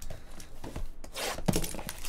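Hands handling a cardboard trading-card box: its cardboard rubs and scrapes, with a few light knocks.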